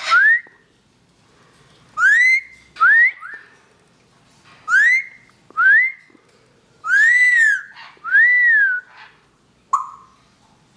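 Lilac-crowned Amazon parrot whistling: short upward-sliding whistles in pairs, about every three seconds, then two longer whistles that rise and fall, and a brief note near the end.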